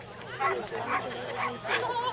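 A small dog barking a few short times, about half a second apart, over a person saying "Oké, goed."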